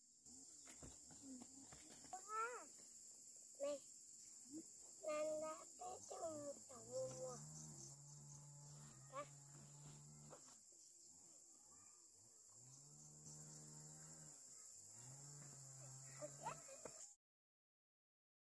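Small children's high-pitched voices and a woman's voice talking in short exchanges, over a steady faint high hiss. All sound cuts off abruptly near the end.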